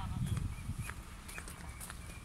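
Scattered faint short calls from a flock of wild ducks, over a low rumble of wind on the microphone.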